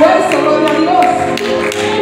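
Lively church music with a steady tapping beat, about two to three taps a second, and a woman's voice carrying over it.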